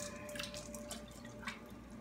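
Pot of salted water boiling gently with spaetzle dumplings in it: faint bubbling with a few soft pops and drips.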